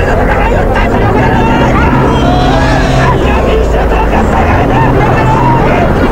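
A crowd of protesters shouting, many voices at once, over a steady low hum.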